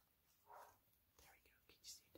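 Near silence, with a few faint whispered words under the breath.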